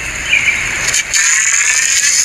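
Scissors snipping through a green plant stem, two sharp clicks about a second in, over a steady hiss of outdoor noise.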